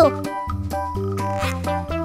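Children's background music with a steady bouncy bass and plucky keyboard notes. A falling whistle-like glide ends just as it opens, and a brief noisy sound effect comes in about a second and a half in.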